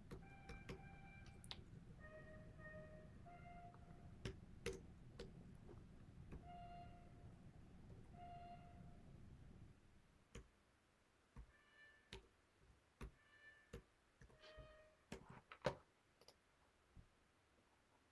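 Faint single notes from the notation software's trumpet playback, about eight in all, each sounding briefly as it is entered, with computer keyboard and mouse clicks between them.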